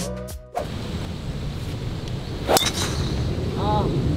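A golf driver strikes the ball off the tee: a single sharp crack about two and a half seconds in, with a brief ringing after it, over a steady low outdoor rumble. Background music cuts off about half a second in, and a short vocal exclamation follows the shot.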